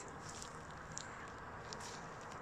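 Quiet outdoor background: a faint, steady hiss with a couple of tiny clicks, and no clear sound event.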